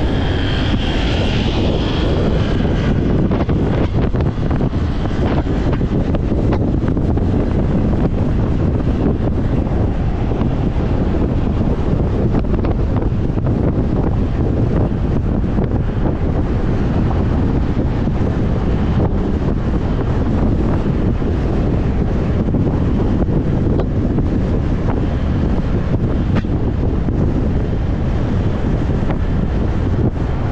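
Steady wind rush on the microphone of a motorcycle moving at speed, with the bike's running and road noise beneath it.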